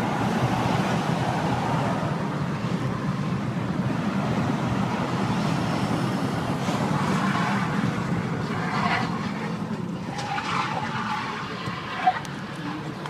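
Steady road and engine noise inside a moving car's cabin, a low even rumble.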